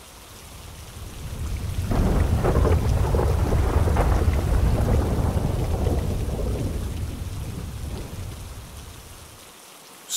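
Rolling thunder over steady rain: a deep rumble swells in about two seconds in and slowly dies away near the end.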